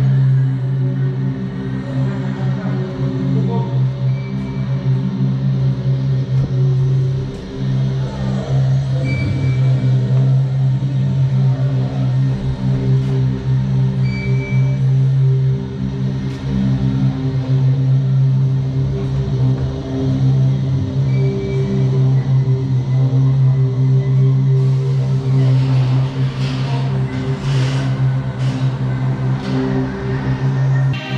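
Dark ambient horror soundtrack playing over the queue's speakers: a steady, loud low drone with sustained tones layered above it. Several sharp hits come near the end.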